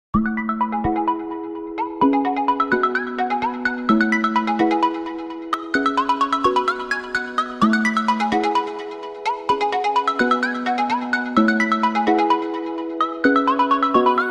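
Background music: a bright, chiming melody over chords that change about once a second, with no beat.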